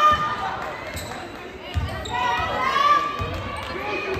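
Basketball dribbled on a hardwood gym floor: a few low bounces about a second and a half apart, with voices calling out in the gym.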